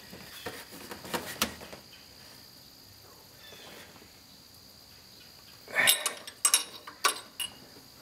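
Metal spark plug socket and extension clinking against the engine while a spark plug is fitted into a Saab V4: a few light clicks in the first second and a half, a quiet stretch, then a cluster of sharper clicks and knocks about six seconds in.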